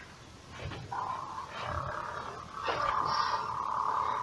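Sound-equipped LED lightsaber humming steadily while it is swung, with a swing swoosh swelling near the end.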